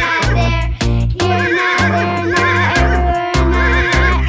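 A horse's whinny, a cartoon sound effect, over background music with a steady beat.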